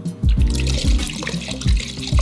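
Liquid rug-cleaning shampoo poured from a plastic jug in a thin stream into a bucket of water, trickling and splashing. Background music with a steady beat plays over it.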